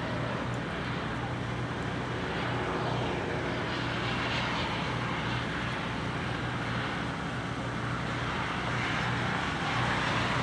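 A steady low drone under an even outdoor hiss, swelling slightly in the middle and then holding level.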